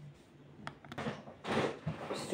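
Handling noise from a smartphone being moved and set in place on a table: a couple of light clicks followed by rustling in the second second, over a faint steady hum.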